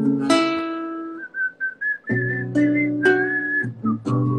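Nylon-string classical guitar strummed in chords, struck a few times and left to ring, with a thin whistled melody over it from about a second in.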